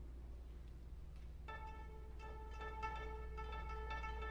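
Student string orchestra begins playing about a second and a half in, with short repeated notes on much the same pitch. Before that there is only a low steady hum.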